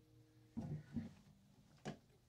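The last acoustic guitar chord dies away, then a short low murmur and, just before the end, a single sharp knock as the guitar is handled.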